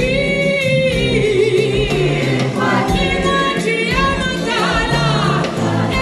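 A church choir singing a gospel song live, full voices holding and bending sustained notes over steady low notes.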